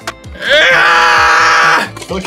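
A bacon alarm clock's small speaker plays a recorded rooster crow as its wake-up alarm. It is loud and begins about half a second in with a rising note, then holds one long note and cuts off just before the end.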